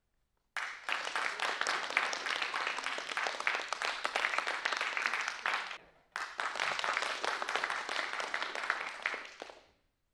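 A group of people clapping in a large hall, in two stretches: the first starts abruptly about half a second in and is cut off near the middle, the second starts straight after and dies away near the end.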